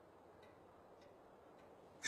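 Near silence with faint, regular ticking, a little under two ticks a second.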